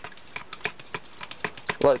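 Thin plastic stirrer clicking and tapping against the inside of a plastic measuring jug while soap is stirred into water: quick, irregular clicks.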